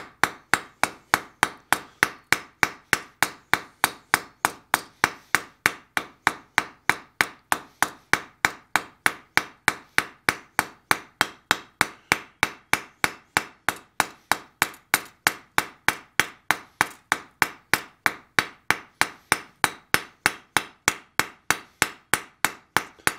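Hand hammer striking a red-hot steel bar on an anvil in a steady, even rhythm of about three to four blows a second. Each blow is a sharp ring of hammer on steel. The blows are rounding an octagonal forged taper into a smooth round taper.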